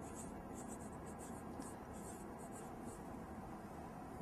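Faint scratching of handwriting strokes, short and irregular, over a low steady room hum.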